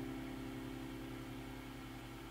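The last notes of a steel-string acoustic guitar ringing on and fading away, with no new notes played, into faint room noise.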